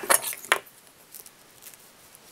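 Small metal fly-tying scissors being handled: about three sharp metallic clicks in the first half-second, then a couple of faint ticks.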